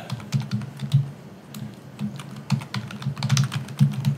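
Typing on a computer keyboard: a run of quick, uneven key clicks.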